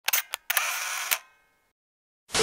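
Camera shutter sound effect: a few sharp clicks, then a short whirring stretch that ends in another click and dies away, about a second and a half in all.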